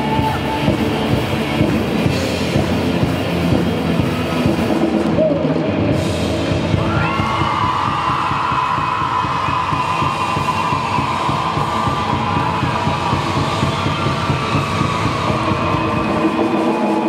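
Live rock band playing: distorted electric guitars, bass guitar and drum kit. About seven seconds in, a lead guitar note slides up and is held as a long high tone over the band.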